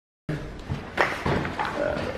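Sheets of paper rustling as printed scan results are handled, with a sharp rustle about a second in and a man's low "uh". The sound starts abruptly a moment in, after a brief dead-silent gap.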